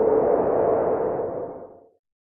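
Edited-in transition sound effect: a swelling whoosh with a steady low hum through it, fading away over the second half.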